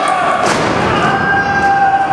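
A single heavy thud about half a second in: a wrestler's body hitting the canvas-covered wrestling ring mat, with crowd voices behind it.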